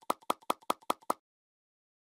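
A short pop sound effect repeated six times in quick succession, about five a second, the kind used in video editing as icons pop onto the screen.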